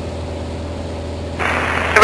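Steady low drone of a Beechcraft Sundowner's single piston engine and propeller at cruise, heard from inside the cabin. About a second and a half in, a radio hiss comes up as the reply from flight service begins.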